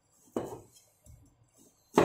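Chinese cleaver slicing through a fish fillet and knocking on a wooden cutting board: one knock about a third of a second in, a few faint taps, then a louder knock at the end.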